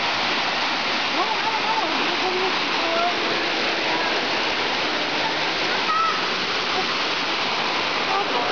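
Water of a rocky mountain stream cascading over boulders: a steady, loud rush. Faint distant voices come through it now and then.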